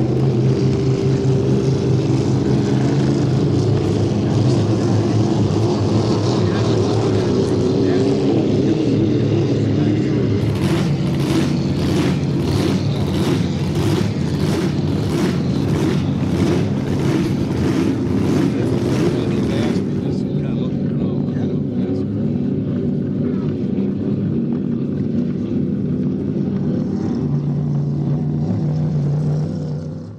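Racing hydroplane engines running hard at speed on the water. From about ten to twenty seconds in, a regular pulsing of about one and a half beats a second runs over the engines.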